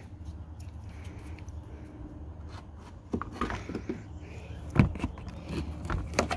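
Light plastic clicks and knocks from handling a lawn mower's pull-start cord and handle, scattered through the second half with one sharper knock near the end, over a low steady rumble.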